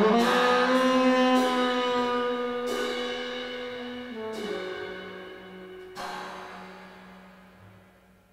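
Closing held notes of a live jazz trio: trumpet and tenor saxophone sustain long notes over cymbal strikes. The trumpet drops out about four seconds in, and the saxophone holds a lower note as the music fades away, with one more cymbal crash near the end.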